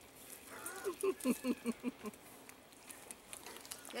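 A person laughing in a quick run of short bursts, about half a second to two seconds in, then quieter.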